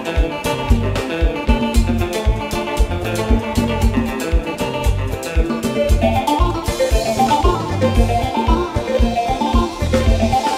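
A live konpa band playing: drum kit and bass keep a steady dance beat under an electric guitar, with a quick run of notes moving up and down from about six seconds in.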